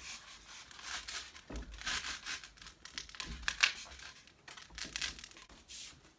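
Irregular scratchy rubbing and rustling as a foam tombstone decoration is pressed and shifted against a closet door, held on with Velcro strips, with a couple of soft bumps.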